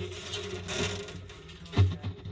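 A phone rubbing and scraping against the inside of a hollow acoustic guitar body as it is moved around, with low knocks throughout and a louder bump near the end.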